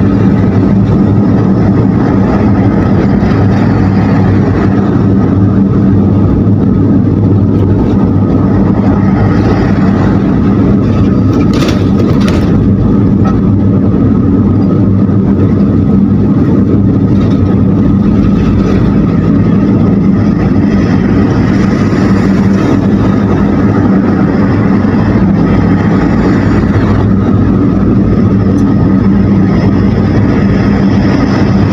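Steady road and engine noise of a car cruising on a highway, heard from inside the cabin: an even rumble with a constant low hum.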